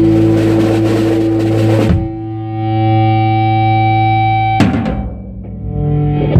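Electric guitar and drum kit playing together: the guitar holds sustained notes over drums and cymbals. The drums drop out about two seconds in, leaving the guitar ringing alone. A drum and cymbal hit comes near the end, and the guitar comes back in with new notes.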